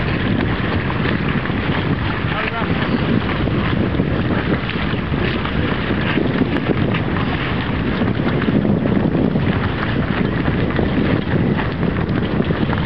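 Strong, steady wind buffeting the microphone in the open, with the rush of choppy water beneath it.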